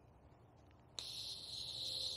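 Air hissing out of a bicycle tire's valve as the valve core is loosened with a valve-core removal tool. The hiss starts suddenly about a second in and grows slowly louder.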